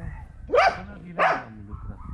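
A dog barking twice, two short loud barks about two-thirds of a second apart.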